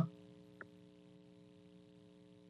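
Faint steady electrical mains hum of several even tones, with one small click about half a second in: dead air while a caller on the line fails to answer.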